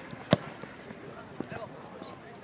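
A football kicked once, a single sharp thud about a third of a second in, with a fainter knock about a second later.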